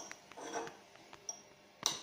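A metal fork clinking against a small ceramic bowl a few times, with the loudest, sharpest clink near the end.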